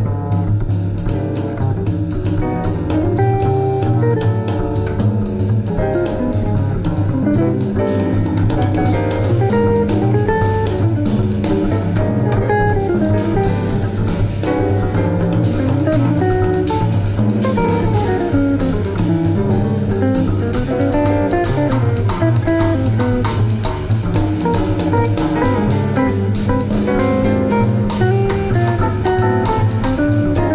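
A small-band jazz recording: a plucked-string lead plays running melodic lines over a walking bass and drum kit.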